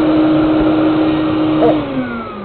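Vacuum cleaner motor running steadily, blowing air into a homemade airbag and inflating it; near the end its pitch starts to fall as the motor winds down.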